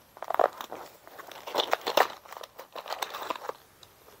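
Plastic-wrapped parcel crinkling and rustling in the hands as it is torn open, a run of irregular crackles.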